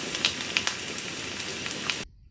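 A steady crackling hiss like food sizzling, with scattered sharp pops.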